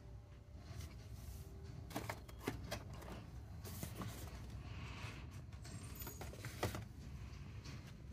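Faint clicks and taps of a boxed toy, cardboard and plastic packaging, being handled on a store shelf, with a sharper click near the end, over a low steady room hum.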